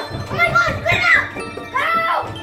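Several children shrieking and yelling at once in high voices, in fright, over steady background music.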